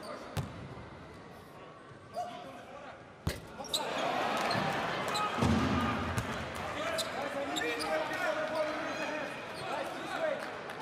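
Basketball bounced a few times on the hardwood court in a large arena, then a sharp knock about three seconds in. Right after, the crowd noise swells into loud shouting and cheering with a low drum thud, and stays up.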